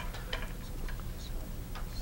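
Quiet pool-hall background with a few scattered light clicks and ticks, while the cue ball rolls across the table after the shot.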